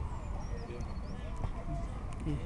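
Distant voices of players calling and shouting across an outdoor football pitch, over a steady low rumble on the microphone. A brief high-pitched tone sounds about halfway through.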